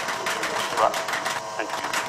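A man's voice reading out vote figures in French, over a steady background of rapid clicking and hiss.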